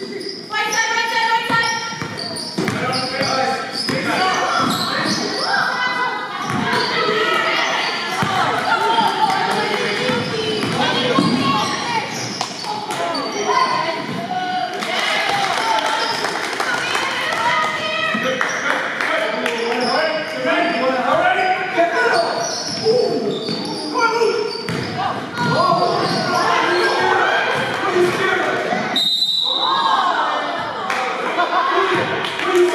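A basketball bouncing on a hardwood gym floor as players dribble, over a steady mix of voices, all echoing in a large gymnasium.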